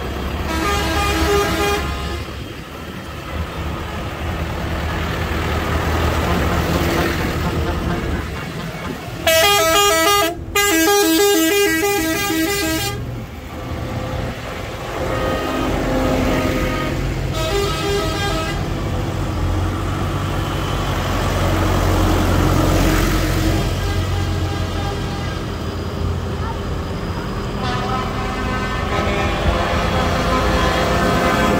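Big farm tractors driving past close by, their diesel engines rumbling, and horns sounded several times; the loudest is a long horn blast about ten seconds in that lasts some three seconds.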